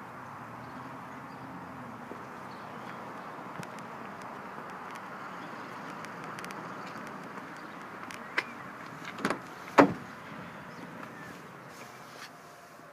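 A steady background hiss, then a click and two sharper knocks about eight to ten seconds in: a pickup truck's rear door latch being pulled and the door opening.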